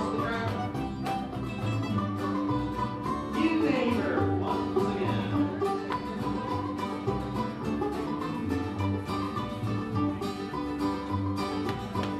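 Old-time string band playing a contra dance tune, with banjo, guitar and upright bass over a steady, even beat.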